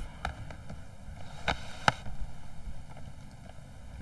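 Handling noise from plugging in a laptop's charger: a few scattered clicks and knocks over a faint steady hiss, the sharpest click a little under two seconds in.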